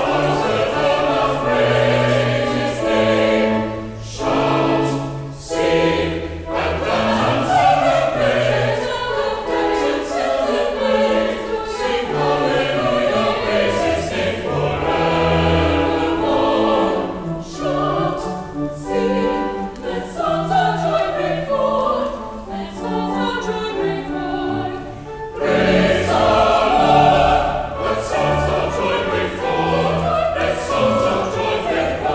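Mixed church choir of men's and women's voices singing an anthem in parts, in sustained phrases with short breaks between them.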